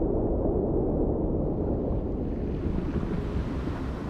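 Ocean ambience: a low, steady rumble of water and wind noise with no distinct events, easing slightly toward the end.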